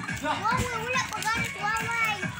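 Children's voices calling and chattering as they play, high-pitched and rising and falling without a break.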